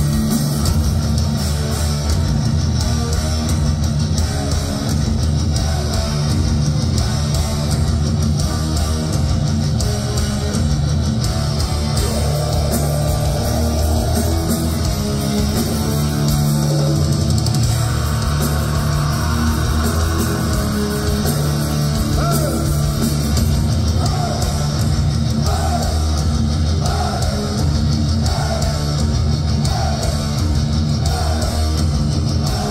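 Live heavy metal band playing loud and without pause: distorted electric guitars over a drum kit.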